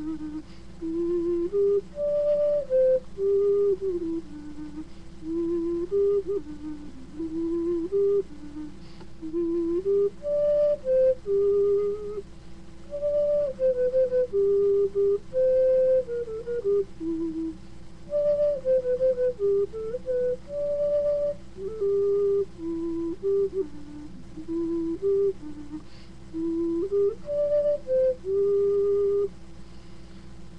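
Homemade unfired clay bass ocarina, tuned to about C, playing a tune one clear note at a time in its low register, with a slip or two along the way.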